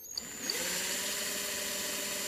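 Bosch cordless drill with a half-millimetre bit drilling a fine hole into a small rimu wood disc. The motor spins up with a short rising whine about a third of a second in, then runs at a steady speed.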